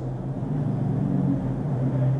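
A steady low hum under a faint hiss.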